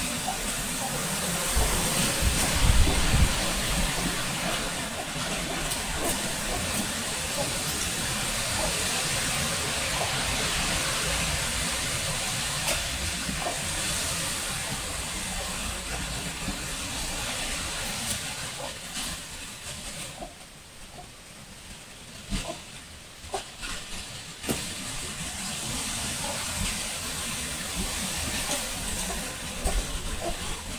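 Steady rushing background hiss that dips about twenty seconds in, with scattered light taps and squeaks of a marker writing on a whiteboard.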